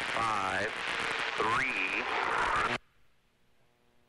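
Landing height callouts ('five', 'three') over a hissing radio channel. The hiss cuts off abruptly about three seconds in as the transmission ends, leaving near silence.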